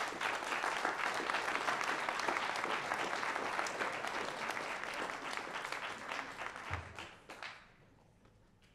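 An audience applauding at the end of a talk. The clapping is steady and dies away near the end.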